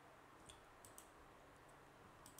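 A few faint computer mouse clicks over near silence, one about half a second in, two close together near one second, and another shortly before the end.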